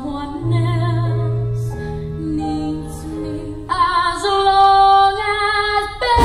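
A young female soloist singing a slow show-tune ballad with vibrato over a sustained instrumental backing, swelling to louder, higher held notes about two-thirds of the way through.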